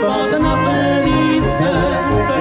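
Czech brass band (dechovka) playing an instrumental passage: held melody notes over a steady low beat, before the vocals come in.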